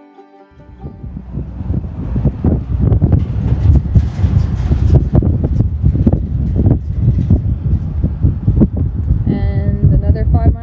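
Wind buffeting the microphone: a loud, gusty low rumble that builds up over the first few seconds and then stays strong.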